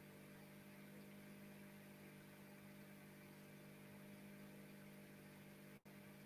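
Near silence: a faint steady hum with light hiss on the call's audio line, with a brief dropout just before the end.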